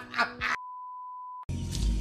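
A voice briefly, then a single steady electronic beep at one pitch lasting about a second, with all other sound cut out around it; music starts right after the beep ends.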